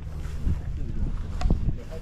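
People talking nearby over a low rumble of wind on the microphone, with a sharp knock about one and a half seconds in.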